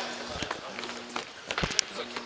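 Footsteps and scattered knocks of futsal players' shoes and ball on a gymnasium floor, with distant players' voices, and a sharp knock a little before the end.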